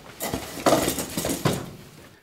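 Clattering and rustling handling noise: a run of short, light knocks over about a second and a half, fading near the end.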